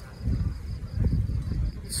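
A night insect chirping in a steady high trill of about seven pulses a second, which fades about halfway through, over uneven low rumbling on the microphone.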